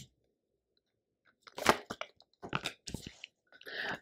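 Tarot cards being pulled from the deck and laid down on the spread: a few short, sharp card snaps and slaps, starting about a second and a half in.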